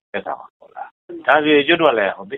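A voice speaking in short phrases that rise and fall in pitch, with one longer drawn-out phrase in the second half. The sound is dull and narrow-band.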